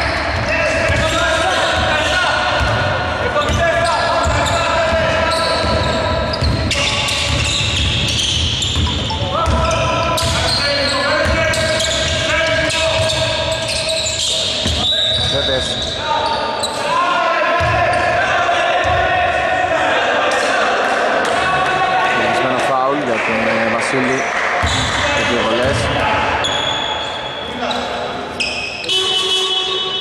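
Sounds of a basketball game in a large indoor hall: a basketball bouncing on the court and players' voices calling out.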